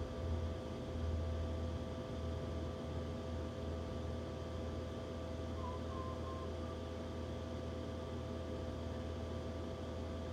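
Steady low hum of room noise, with faint steady whining tones over it and a faint short high tone about six seconds in.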